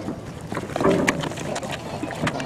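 Caster wheels of a piano dolly rolling over concrete under a heavy upright piano: a steady rumble with a few knocks and rattles, louder about a second in.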